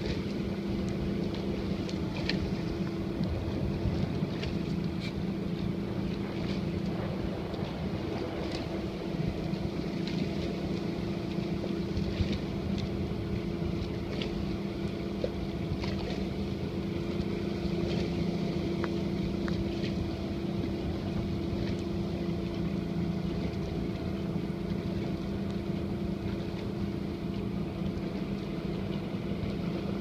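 Outboard motor of a coaching launch running steadily at cruising speed, a constant low hum, with wind buffeting the microphone.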